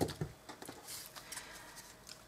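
Faint rustling and soft handling noises of paper and cardstock as a paper-wrapped chocolate bar is turned over and worked at by hand.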